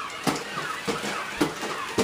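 Battery-powered toy humanoid robot walking on carpet: its gear motors whir, and several sharp knocks and clicks come as it steps.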